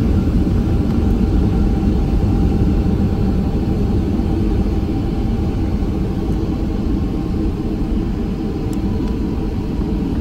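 Boeing 757-300 jet engines running, heard inside the cabin as a steady low rumble with faint steady engine tones above it, as the airliner taxis on the ground.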